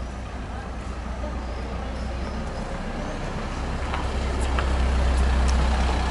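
A motor vehicle's low engine and road rumble on the street, growing louder over the last few seconds as it approaches.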